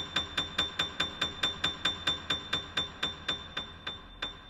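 Grand piano: one very high note struck over and over, about four times a second, each strike ringing briefly, the strikes growing softer near the end.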